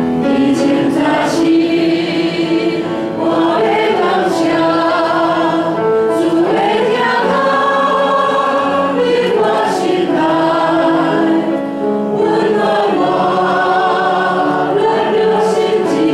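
A church worship team of women and a man singing a praise hymn in Taiwanese through microphones, holding long notes with vibrato.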